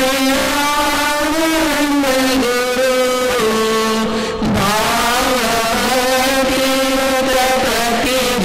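Voices singing a devotional chant in long held notes that step up and down in pitch, broken briefly about four seconds in.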